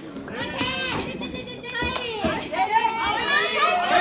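Overlapping high-pitched shouting and yelling from wrestlers and fans at a women's pro wrestling match, with a single sharp smack about two seconds in.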